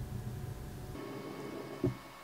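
Quiet room tone with a faint low hum, and one short, soft low thump near the end.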